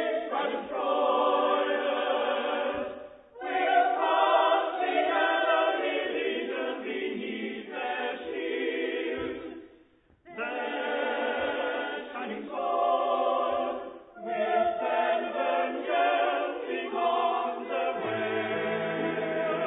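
Mixed chorus singing sustained phrases, broken by short breaths or pauses about three, ten and fourteen seconds in. The pause near ten seconds is the longest and almost silent.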